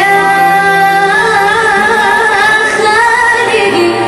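A young woman singing an Arabic song live into a microphone, holding long wavering notes with vibrato, accompanied by a small Arabic ensemble of violins and ouds.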